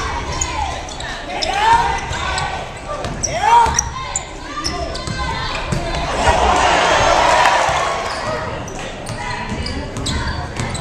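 Basketball game in a hard-walled gym: a ball bouncing on the hardwood floor, sneakers squeaking in short squeals during the first few seconds, and crowd voices throughout. The crowd noise swells for a couple of seconds about six seconds in.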